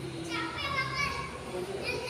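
Young children calling out and shouting in high voices while playing football, one call about a quarter-second in lasting under a second and another starting near the end, over a steady low hum.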